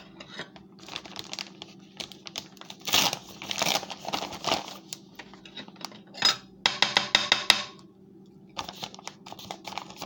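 A paper-and-plastic tapioca flour bag being handled: crinkling and rustling in bursts, with a quick run of clicks a little after halfway, over a faint steady hum.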